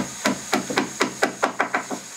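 Quick, even knocks of a hand tool on the wooden bow of a boat hull under construction, about six strikes a second.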